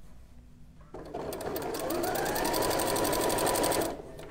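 Janome sewing machine stitching a wide zigzag to attach lingerie elastic to stretch fabric. About a second in the motor starts and its whine rises as it speeds up, then it runs steadily at a rapid, even stitch rate and stops just before the end.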